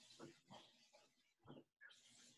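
Near silence over a video call's audio, with a few faint, short noises.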